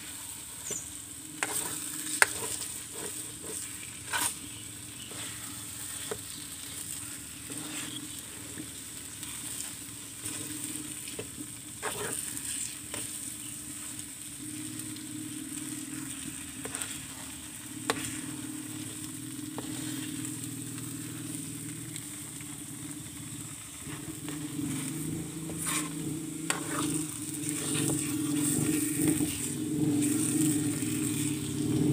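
A spatula stirring and scraping a thick sweet corn and coconut milk mixture in a metal wok over a wood fire. The mixture sizzles, and the utensil clicks irregularly against the pan. A low rumble grows louder in the last few seconds.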